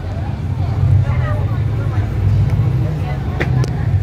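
City bus engine and drivetrain running with a steady low drone, heard from inside the cabin, with a few sharp clicks or rattles a little after three seconds in.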